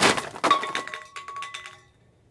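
Grocery bags dropped on the floor: a crash, then cans and packages clattering and clinking, with a ringing metallic note that fades out over about a second and a half.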